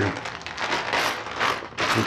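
Plastic bubble-wrap packaging crinkling and rustling as it is handled and opened, in uneven spurts with a loud crinkle near the end.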